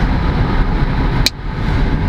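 Steady low rumble of a car's engine and road noise heard from inside the cabin while driving, with one sharp click a little over a second in.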